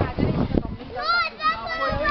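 Children's voices shouting and calling out in high pitch, starting about a second in, over a low rumble in the first half second.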